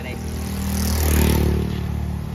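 A motor vehicle passing close by on the road: its engine and tyre noise grow louder to a peak a little over a second in, then ease off slightly.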